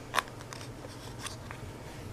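Clear plastic lid being pulled off a small wax-melt cup: one sharp plastic click just after the start, then a few faint ticks of the cup being handled.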